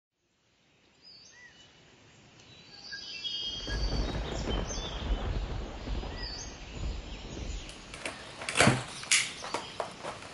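Small birds chirping with wind rumbling on the microphone; after a cut near the end, a few sharp clicks and rustles as painted pieces are handled.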